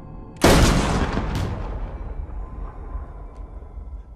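A single handgun shot about half a second in, very loud, with a long reverberant tail that fades over about three seconds.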